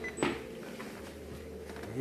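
A single sharp knock about a quarter of a second in, over a steady low hum of room tone.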